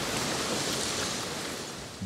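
Ocean surf on a beach: a wave washes in and draws back as a swell of rushing noise that builds, peaks early and then slowly fades.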